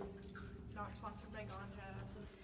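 Faint voices of people talking, too quiet for words to be made out.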